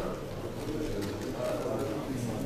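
A person speaking continuously.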